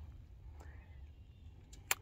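Faint background ambience with one sharp click near the end.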